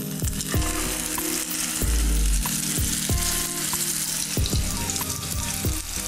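Battered whiting fillets sizzling as they fry in hot oil in a frying pan, with scattered sharp pops and crackles.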